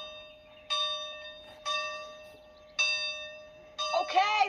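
A single bell-like musical note struck four times, about once a second, each ringing out and fading away: the opening music of a film trailer.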